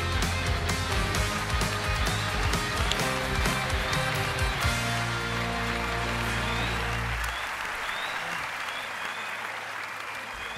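Studio audience applauding over upbeat live band music with a strong beat. The band ends on a long held low chord about seven seconds in, leaving the applause with a few short whistles.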